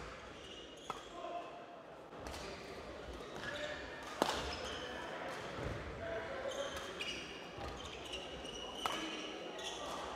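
Badminton play in a sports hall: a few sharp racket strikes on the shuttlecock, the loudest about four seconds in and another near the end, with short squeaks of shoes on the court floor over a low murmur of the hall.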